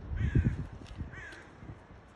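Two short cawing calls of a crow, about a second apart, with a brief low rumble on the microphone under the first.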